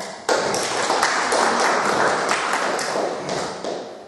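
A small audience applauding: a dense patter of hand claps that starts suddenly and dies away near the end.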